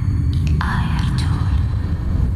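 Slow passage of belly dance performance music: a steady low drone, joined about half a second in by a breathy, whispery sound.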